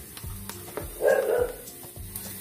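A dog barks once, about a second in, over background music. A few faint clicks come before the bark.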